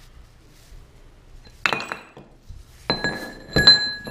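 Loose metal drivetrain parts clinking together as they are handled: one sharp clink about two seconds in, then two ringing metallic clinks close together near the end, the last one the loudest.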